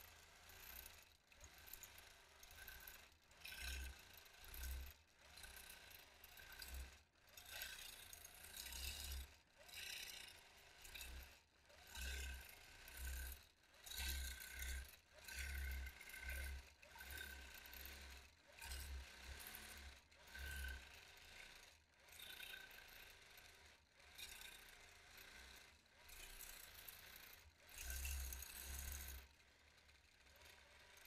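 Longarm quilting machine stitching as the machine head is guided freehand across the quilt. A faint mechanical running that comes and goes in short bursts about once a second.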